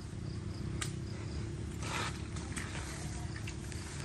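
Quiet outdoor ambience with faint insect chirping, a few light clicks and a brief soft noise about two seconds in.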